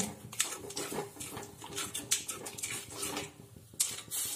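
Steel ladle scraping and tapping against an aluminium kadai while stirring thick, milky suji kheer, in irregular strokes.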